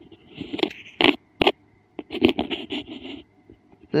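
Handling noise: a run of short scrapes and scratches with a few sharp clicks as a small circuit board is shifted about under a magnifier.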